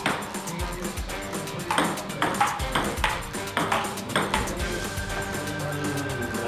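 Table tennis rally: a ping-pong ball clicking sharply off paddles and the table in a quick, irregular series, over background music.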